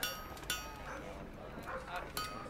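Background town ambience: sharp metallic clinks that ring on, with a dog barking and faint voices beneath.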